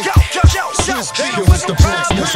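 Boom-bap hip hop beat with hard kick drum hits, and a voice over the music.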